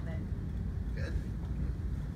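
Faint, indistinct voices over a steady low rumble of room noise, with a brief snatch of talk near the start and another about a second in.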